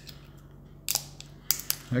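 Thin plastic protective film being peeled off the end of a 26650 lithium-ion battery cell: a short crinkle just under a second in and a couple of sharp clicks about a second and a half in.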